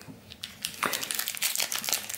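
Glossy trading cards rustling and crackling as they are handled and slid apart in the hand, the sticky cards peeling off one another. It starts faint and becomes a busy run of small crackles from about half a second in.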